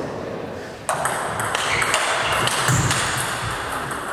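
A table tennis rally: the ball clicking sharply off the bats and table in quick succession, starting about a second in, with a dull thud near the end.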